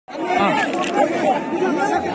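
Crowd of spectators chattering and calling out, many voices overlapping.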